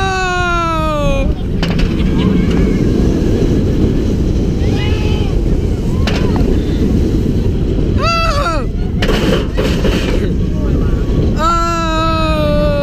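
Heavy wind buffeting the microphone of a camera riding in the front of the Mako roller coaster at speed. Riders give long whoops that slide down in pitch at the start and near the end, with a shorter one about eight seconds in.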